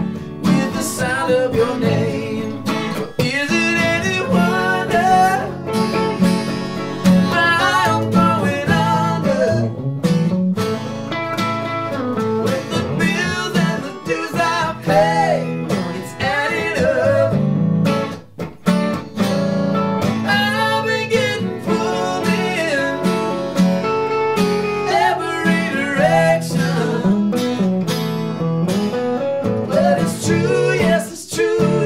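A Gibson acoustic guitar and a Gibson semi-hollow electric guitar played together in a country-blues style song, strummed and picked, with a man's singing voice over them. The music eases off briefly about two thirds of the way through.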